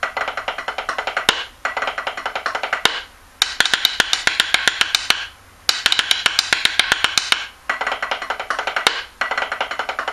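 Rudimental snare drum played with sticks in a 3/4 backsticking pattern, some strokes made by flipping the stick and striking with its butt end. Fast runs of crisp strokes come in short repeated phrases, with brief breaks between them.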